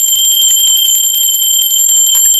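A small brass handbell shaken rapidly, its clapper striking in quick succession to give a loud, continuous high ringing.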